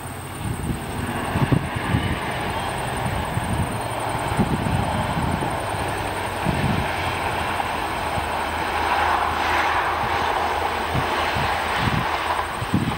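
Two KiwiRail DC-class diesel-electric locomotives hauling a passenger train past at a distance, a steady engine and rolling rumble that swells about nine seconds in, with irregular gusts of wind buffeting the microphone.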